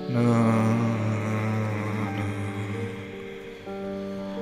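Improvised solo piano: a loud low chord struck at the start rings and slowly fades under a quick rippling figure in the higher notes, and new held notes come in near the end.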